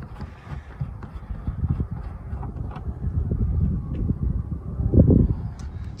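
Irregular low rumbling with scattered bumps, strongest about five seconds in: wind buffeting the microphone and handling noise.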